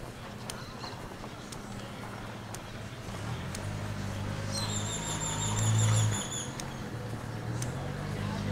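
A motor vehicle's engine drones, growing louder as it comes close and loudest about six seconds in before easing off. A rapid string of high-pitched chirps rides over it for about two seconds in the middle.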